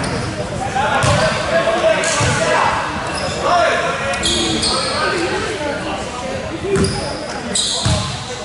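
Voices of players and spectators talking in a large, echoing gym, with a few basketball bounces on the wooden court.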